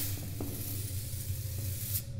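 A steady, even hiss that starts abruptly, holds for about two seconds and cuts off suddenly at the end, over a low hum.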